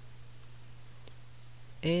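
A pause in speech with a steady low hum underneath and one faint click about a second in; a woman's voice starts again near the end.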